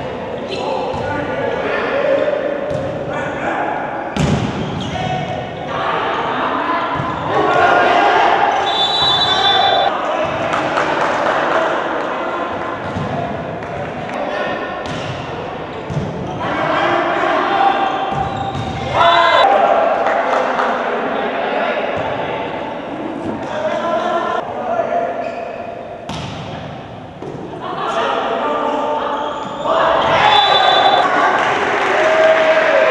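Volleyball rally in a gymnasium hall: the ball struck and hitting the floor with sharp slaps and thuds, several times, amid shouting voices of players and spectators that echo in the hall.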